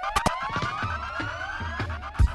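DJ siren sound effect over reggae music: a rising whoop repeated several times in quick succession, each overlapping the last like an echo.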